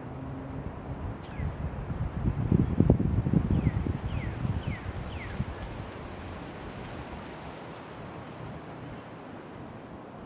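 Wind buffeting the microphone, a low rumble that gusts up strongly for a few seconds near the middle and then settles to a steady background. A few short falling chirps from a bird sound over it early on.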